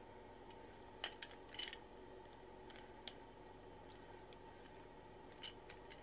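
Plastic Transformers action figure parts clicking as a combiner hand is fitted onto the figure: a few short sharp clicks about a second in and a second later, then two faint single clicks, over a faint steady room hum.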